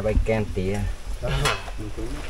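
A metal spoon scraping and clinking against an aluminium pot and steel plates as food is served out, with a person's voice talking briefly over it.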